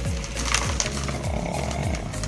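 Crackling rustle of dry, loose potting mix as a root ball is pulled up out of a plastic pot, bits of the mix spilling and pattering into a plastic basin.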